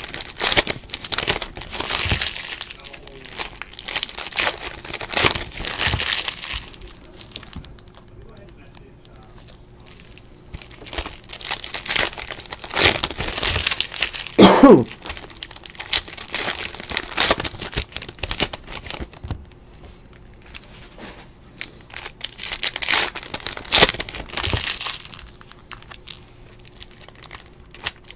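Foil trading-card pack wrappers crinkling and being torn open by hand, in several bursts with quieter gaps between.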